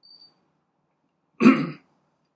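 An elderly man gives one short cough to clear his throat, about one and a half seconds in.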